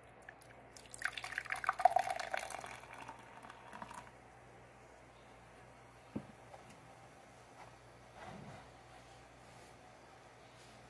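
Carbonated Mountain Dew soda poured from a can into a glass, splashing and fizzing for about three seconds, then the fizz dying away. A single light knock follows a couple of seconds later.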